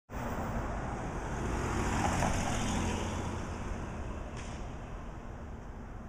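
Road traffic: a car passes along the street, its tyre and engine noise swelling to its loudest about two seconds in and then fading away.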